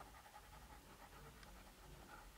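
Near silence: room tone with faint scratching and tapping of a stylus on a drawing tablet.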